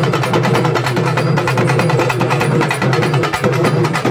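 Urumi melam drum ensemble (urumi and accompanying drums) playing a fast, dense, driving rhythm of rapid, evenly spaced strokes.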